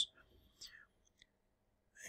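Near silence: room tone, with a faint, brief sound about half a second in.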